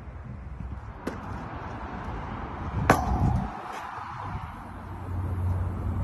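A basketball striking a steel hoop ringed with sharpened nails: a light knock about a second in, then a sharp clang about three seconds in that rings briefly. Low wind rumble on the microphone rises near the end.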